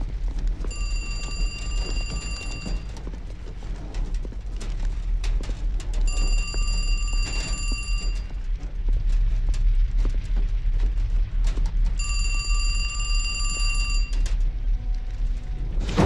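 Payphone ringing three times, each ring about two seconds long and the rings about four seconds apart, over a steady low rumble.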